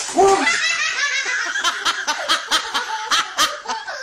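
A young child laughing hard, with high-pitched laughter that starts suddenly and runs on in quick repeated bursts of about four or five a second.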